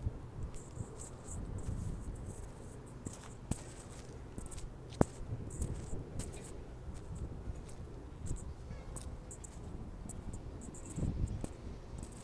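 Outdoor background noise: a steady low rumble with scattered faint high ticks, and one sharp click about five seconds in.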